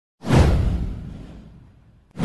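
Cinematic whoosh sound effect with a deep low rumble, swelling suddenly about a quarter second in and sweeping downward as it fades out over a second and a half.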